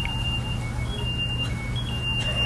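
A small line-following robot runs with a steady low hum while a thin, high electronic beep plays a simple tune, stepping between a few pitches every half second or so, like a small piezo buzzer playing the robot's own soundtrack.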